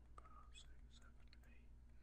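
Near silence: a low steady hum, faint stylus clicks on a writing tablet, and a barely audible murmured voice.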